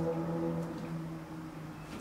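A man's drawn-out hesitation hum held on one steady low pitch, fading out about halfway through, followed by faint room sound.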